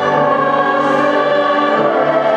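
Large student symphony orchestra playing a slow, sustained passage, with the massed strings holding full chords at a steady, loud level.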